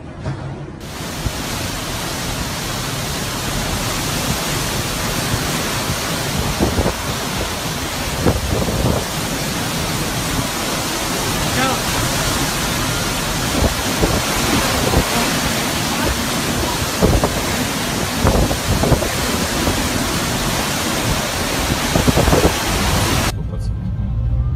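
Storm wind and driving rain blowing steadily and loudly, with occasional harder gusts buffeting the microphone. The sound cuts in about a second in.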